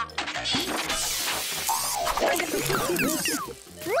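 Cartoon background music overlaid with a burst of clattering, crashing sound effects about a second in, followed by quick rising whistle-like glides near the end.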